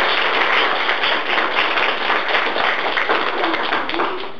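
Applause: hands clapping steadily and quickly, with no let-up.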